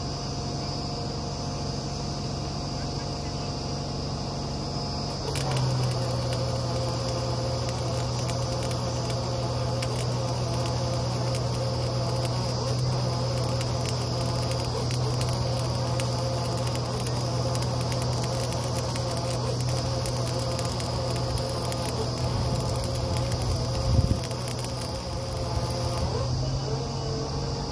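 Truck-mounted borewell drilling rig running steadily with a low hum. About five seconds in it gets louder and rattlier, and a single knock comes near the end.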